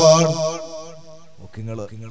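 A man's long chanted vocal phrase ends and fades away, then a short spoken phrase from him comes in about a second and a half later.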